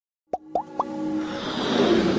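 Animated intro sound effects: three quick upward-gliding pops in the first second, followed by a swell that builds in loudness.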